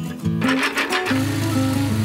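A small petrol lawn mower engine, a sound effect, comes in with a short rattly burst about half a second in and then runs with a steady low buzz, over light background music.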